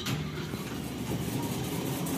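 Automatic sliding doors of a Mogilevliftmash passenger lift opening, the door drive starting suddenly and then running steadily.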